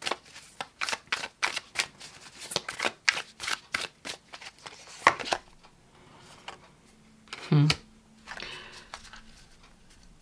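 A tarot deck being shuffled by hand, overhand: quick rapid card flicks for about five seconds, then softer handling as a card is drawn from the deck. There is one brief louder sound about seven and a half seconds in.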